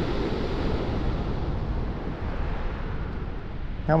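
Steady wash of sea surf on a shingle beach, with a low wind rumble on the microphone.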